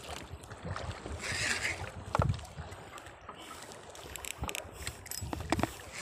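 Sea water sloshing against the hull of a small wooden boat, with wind on the microphone and a few scattered knocks, the loudest about two seconds in.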